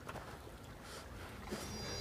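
Quiet, tense film ambience: a low rumbling hum with faint rustling, and thin, high sustained tones coming in a little past halfway.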